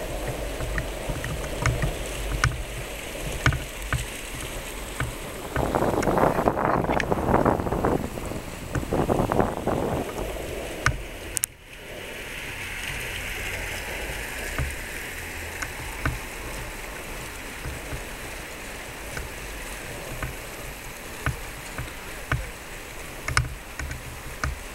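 Outdoor background noise picked up by a handheld camera while walking: a low rumble with scattered light clicks. A louder rushing stretch runs from about six to ten seconds, and the level drops suddenly near twelve seconds, after which a steadier hiss takes over.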